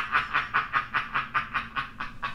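A person laughing in a steady run of short, breathy pulses, about five or six a second, that trails off near the end.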